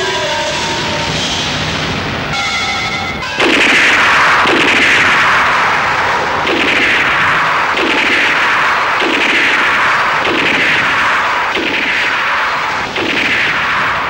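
Film soundtrack music with falling tones. About three seconds in it gives way to a loud, regular series of blast sound effects, gunfire or explosions, roughly one a second, each trailing off with a falling hiss.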